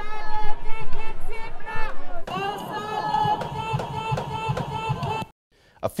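Protesters shouting and chanting "Thessaloniki wake up!" through a megaphone. From about two seconds in, a steady beat of about three hits a second runs under the chant, and it all cuts off suddenly about five seconds in.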